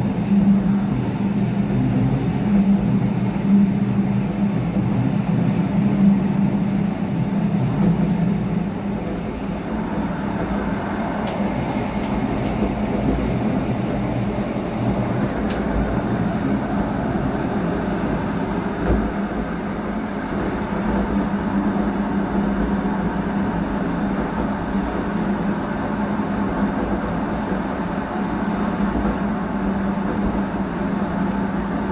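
Rhaetian Railway electric train running on the metre-gauge Bernina line, heard from the cab: a steady rolling rumble with a low hum that is stronger for the first ten seconds or so, and a few faint ticks.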